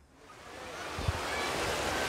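Small waves washing onto a sandy beach, fading in over the first second and then steady.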